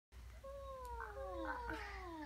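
Two LeapFrog plush puppy toys (My Pal Scout and Violet) sounding at once: two drawn-out electronic voice sounds that each slide slowly down in pitch, the second starting about half a second after the first, with a few short blips in between.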